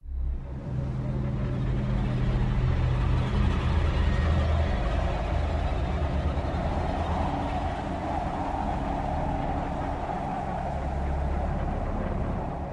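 A low, steady drone with a hiss over it, starting abruptly out of silence: a dark ambient soundtrack bed for the closing title cards.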